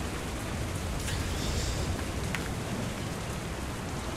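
Rain sound effect: a steady hiss of falling rain with no speech over it.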